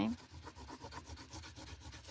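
Yellow pastel stick scratching across paper in rapid, repeated colouring strokes.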